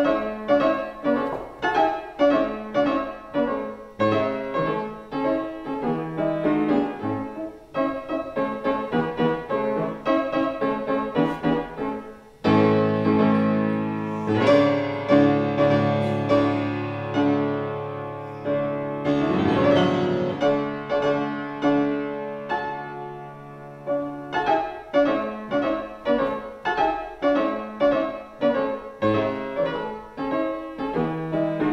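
Fortepiano playing a solo-piano march: short, quickly decaying chords, then from about twelve seconds in a fuller, sustained stretch with held bass notes for some ten seconds before the detached chords return.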